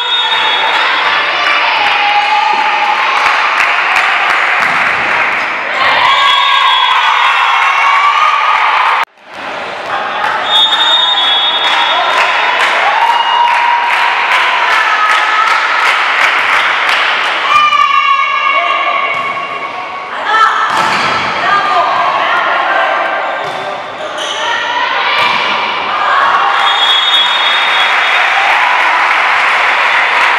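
Indoor volleyball match: a referee's whistle blows three times, near the start, about ten seconds in and near the end. Between the whistles are constant loud voices and shouting in a large hall, with the thumps of the ball being bounced and struck.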